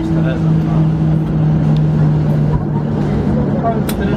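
Cabin noise inside a Boeing 737-800 moving on the ground: its CFM56 engines running steadily with a constant low hum. Background passenger voices, with a sharp click near the end.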